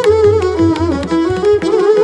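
Carnatic violin duet playing a varnam in raga Bilahari: two violins on one ornamented melody that bends and glides between notes, over a steady pattern of mridangam and ghatam strokes.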